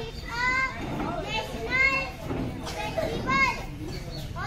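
Children's high-pitched voices, with three loud calls whose pitch rises and falls, about a second and a half apart, over a steady background of murmur.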